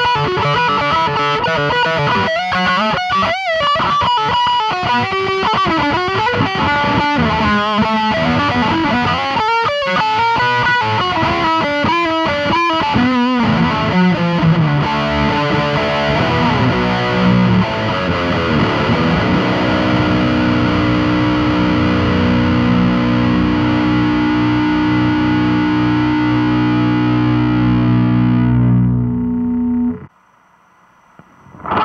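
Eight-string Schecter Silver Mountain electric guitar played with heavy distortion through a high-gain Bantamp Zombie amplifier. It plays quick, shifting runs for about the first half, then sustained chords left ringing, until the sound cuts off abruptly at the end.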